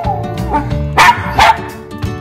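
Intro music with a dog barking twice over it, about a second in and again shortly after.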